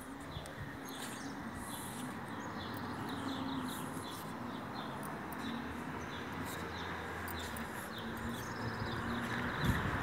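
Outdoor ambience of small birds chirping in short, high, scattered notes over a steady background hiss that grows louder toward the end. A few low thumps come near the end.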